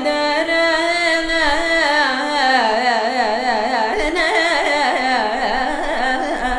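A woman singing Carnatic vocal music in one continuous phrase, her pitch swinging in rapid, wavy ornaments (gamakas), over a steady drone.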